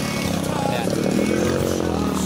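Small motorcycle engine revving hard while pushing through deep floodwater, its pitch climbing about a second in and easing off near the end. The engine is straining against the water.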